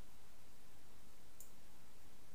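Steady background hiss with a single short computer-mouse click about a second and a half in.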